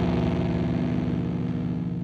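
The final distorted chord of a heavy rock song, electric guitars and bass held and ringing out, slowly fading.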